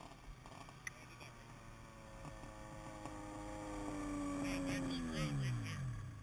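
A snowmobile engine passing close by. It grows louder with a slowly falling pitch, then its pitch drops sharply as it goes past near the end and it fades away.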